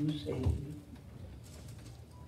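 A woman's voice drawing out the end of a word over a microphone, stopping about a second in, followed by quiet room tone.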